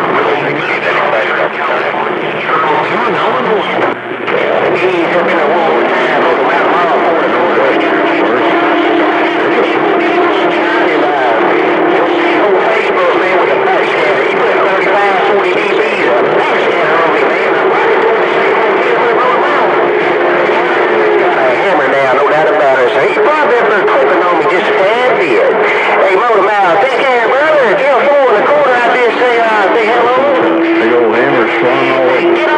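CB radio receiver on channel 28 carrying a pile-up of distant skip stations: several voices overlap, garbled and unintelligible, with steady and wavering whistles where carriers beat against each other.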